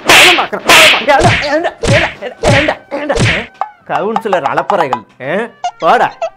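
A series of loud hand slaps on a person, about six in the first three and a half seconds, with a man crying out between them.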